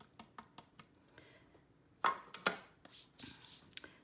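Handling noise at a craft table: light clicks and taps of supplies being moved and set down, with two louder knocks about two seconds in as the embossing powder tray and powder jar go down on the desk.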